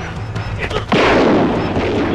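Action-film soundtrack effects: a sudden loud, gunshot-like blast about a second in, followed by a long noisy rush, over a low steady drone.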